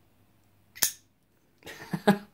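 Rough Ryder liner-lock flipper knife on ball bearings flicked open: a single sharp metallic snap, just under a second in, as the blade swings out and locks. It is a deliberately soft flip meant to fail, yet the blade still deploys fully.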